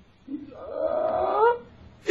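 A person's voice making one drawn-out hesitation sound, a held 'uhh' about a second long that starts about half a second in and rises slightly in pitch at the end.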